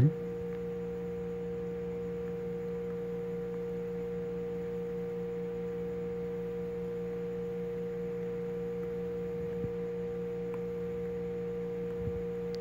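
A steady hum made of a constant low tone and a higher tone with fainter overtones, unchanging in pitch and level.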